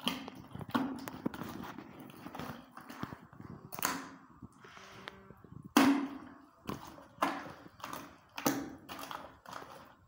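Bare hand stirring a thick slurry of plaster of Paris, water and emulsion paint in a plastic bucket: wet slaps and splashes roughly once a second, with a short pause about halfway through.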